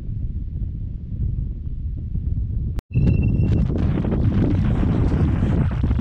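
Wind buffeting the microphone, a steady low rumble. About three seconds in it drops out for a moment, then returns louder and harsher, with a short high tone and a few clicks.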